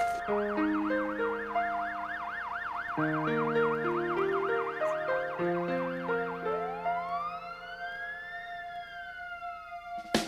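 Ambulance siren sounding a fast yelp, changing about six and a half seconds in to a slow wail that rises and then falls, over synthesizer background music.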